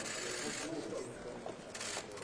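Bursts of rapid mechanical clicking, in the first half-second and again near the end, as from press cameras shooting in continuous mode, over a murmur of voices in a large hall.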